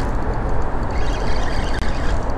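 Steady wind noise buffeting the microphone, a low rumbling rush with no distinct tones.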